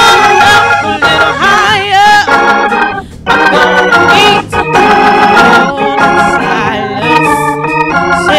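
A woman singing a slow sacred solo with organ accompaniment. Her voice wavers and slides between long held notes over the steady organ chords, with a short pause for breath about three seconds in.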